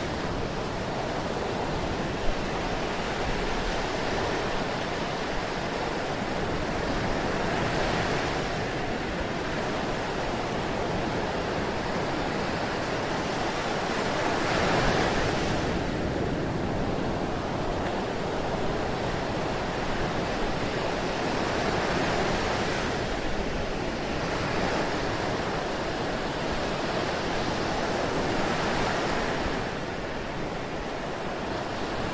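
Ocean surf breaking on a sandy beach: a steady wash of waves that swells every several seconds as breakers come in, strongest about halfway through.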